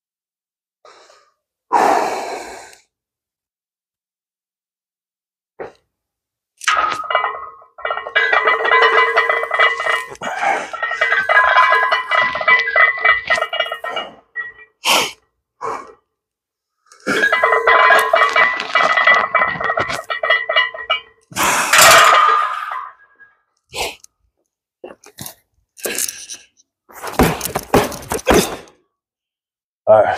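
A barbell bench-press set: clinks and knocks of the loaded bar and plates, ending with sharp clanks near the end as the bar is racked. Music with steady held tones plays through two long stretches in the middle.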